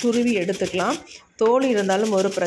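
A voice speaking, with a short pause about halfway through, over the faint rasp of a raw potato being rubbed across a plastic hand grater.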